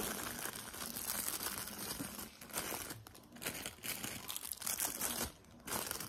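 Crinkly wrapping being handled: an irregular crackling and rustling that comes and goes, with a couple of brief lulls.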